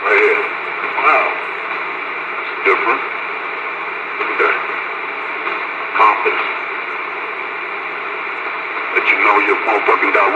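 Radio receiver speaker hissing steadily, with short bursts of voices breaking through every second or two and coming more thickly near the end.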